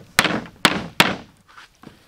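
Lemongrass stalks bashed against a thick round wooden chopping block to bruise them: three sharp thunks about half a second apart, then a faint knock near the end.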